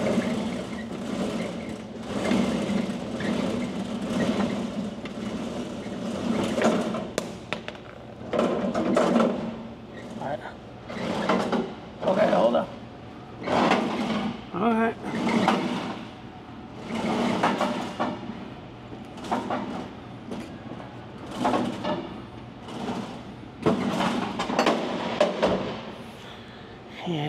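Indistinct voices talking on and off over a steady low hum.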